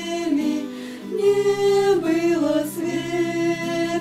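Three girls singing a hymn together, holding long notes in slow changing pitches, with a steady low note sounding beneath them through most of it.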